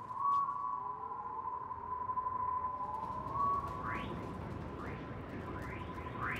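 A steady, high electronic tone with a few brief gliding tones over it, and several quick rising sweeps near the end.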